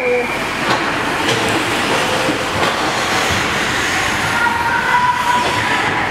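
Ice hockey rink noise: a steady rush of skates scraping and carving on the ice, with a few sharp knocks from sticks and puck.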